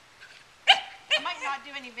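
Welsh Terrier puppy, nine weeks old, giving one sharp, high bark about two-thirds of a second in.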